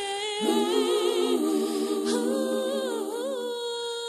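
Unaccompanied voices humming a slow tune in harmony, several parts holding notes together with a slight vibrato and moving to new chords every second or so.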